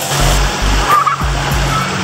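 Water splashing and rushing in a shallow wading pool, a steady noisy wash.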